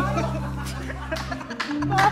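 Studio band playing, a held low note that stops about a second and a half in, with people chuckling and laughing over it.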